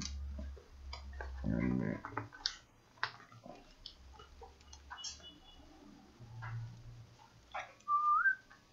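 Hands working at a laptop's plastic underside and battery latch: scattered light plastic clicks and knocks, with a low handling rumble in the first couple of seconds.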